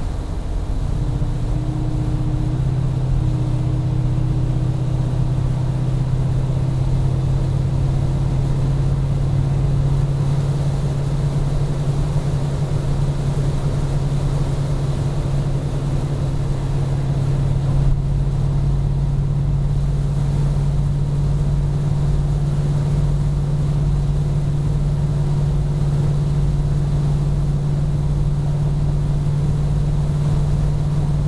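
Chrysler 440 (7.2 L) V8 of a 1974 Jensen Interceptor running steadily, heard from inside the cabin as a deep, even drone. Its pitch steps up slightly about a second in and then holds steady.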